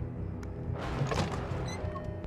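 Horror film score: low sustained tones, with a hissing swell that builds about a second in and fades.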